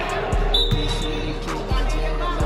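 A basketball thumps a few times at irregular intervals on a hardwood gym floor, with a brief high squeak about half a second in.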